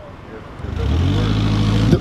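A car approaching on the street, its engine sound growing loud about a second in and then holding steady.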